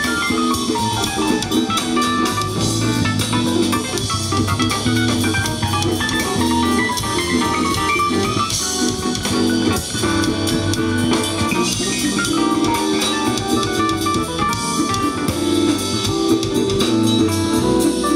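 Jazz band playing an instrumental passage live, with keyboard on a Yamaha Motif ES7 synthesizer over drum kit.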